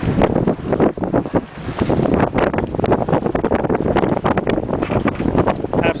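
Wind buffeting the microphone in rapid, irregular gusts, loud enough to cover everything else.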